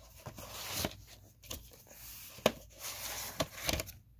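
Plastic VHS cassette and its case being handled: light scraping and rubbing with scattered sharp clicks, the loudest about two and a half seconds in.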